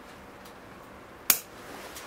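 One sharp snip of bonsai scissors cutting through a dead, dry branch of a Ficus religiosa (sacred fig), a little past halfway, over faint room noise.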